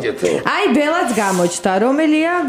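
Speech only: one person's voice talking, with some long drawn-out syllables.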